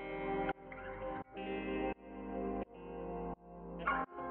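Intro music: a run of about six guitar chords with heavy effects, each swelling up in loudness and then cutting off sharply.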